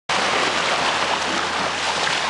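Steady rushing noise of sea water and wind around a small boat at sea.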